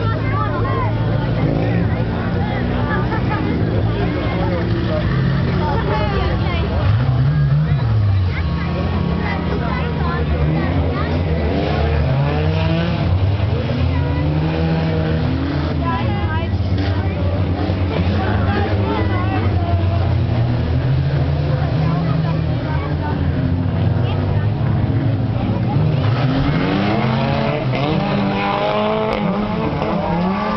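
Several stock car engines running and revving, their pitch rising and falling over and over as the cars accelerate and pass, under a steady drone of engines. Spectators talk over it.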